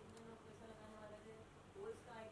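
Near silence: faint studio room tone.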